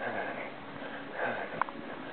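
A marathon runner's hard, gasping breaths close to the microphone, two of them about a second apart, the laboured breathing of exhaustion in the last stretch of a marathon.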